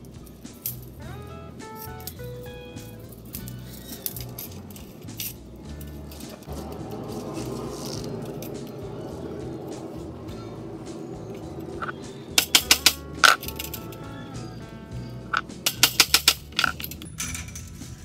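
Background music, broken by two quick runs of sharp clinking taps, about five a little after twelve seconds in and about six near the end, as aluminium screen-frame profiles are knocked together to seat a corner lock in the other side of the frame.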